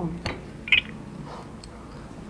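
Two short sharp knocks about half a second apart: a drinking glass clinking against its glass saucer as it is picked up from the table.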